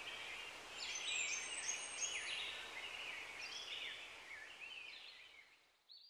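Faint birds chirping over a steady background hiss, fading out near the end.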